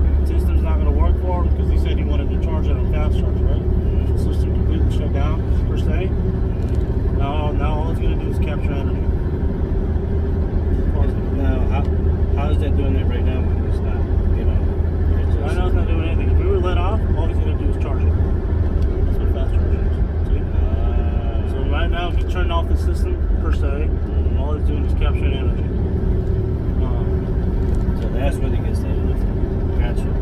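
Steady low drone of a semi truck's cab while driving, engine and road noise running evenly, with faint talk over it.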